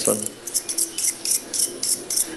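Small wind-up jumping toy donkey on a wooden tabletop: its clockwork clicks and rattles quickly, about five clicks a second.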